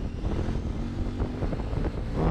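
KTM 950 Supermoto's V-twin engine running steadily as the bike rides along, with wind noise on the rider's action-camera microphone.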